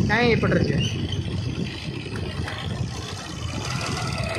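A motor two-wheeler riding along a road: its engine and the wind of riding make a steady low rumble.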